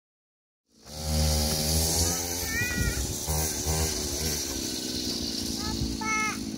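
Small engine of a child's mini quad running, starting about a second in, steady at first and then rising and falling in pitch a few times as the throttle is worked.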